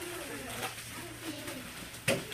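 Soft, indistinct murmur of children's voices in a classroom, low and steady with no clear words.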